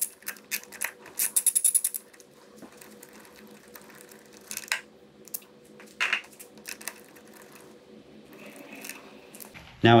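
Socket wrench ratchet clicking rapidly in two quick runs while a spark plug is unscrewed. After that come a few scattered light clicks and taps of tool handling.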